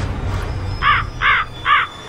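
A bird calling three times in quick succession, each call short and about half a second apart, starting about a second in.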